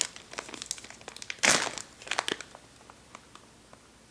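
Clear plastic zip-top sample bag crinkling in the hands as a wax melt is handled: a run of short crackles with one louder rustle about a second and a half in, dying away over the last second or so.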